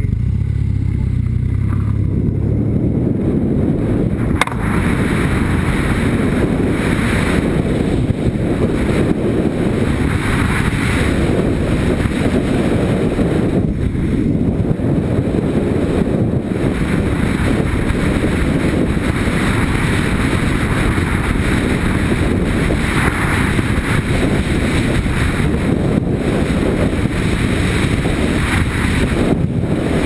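Yamaha Ténéré motorcycle idling, then pulling away along a gravel track. From about two seconds in, the engine is largely covered by steady wind noise on the helmet-mounted microphone.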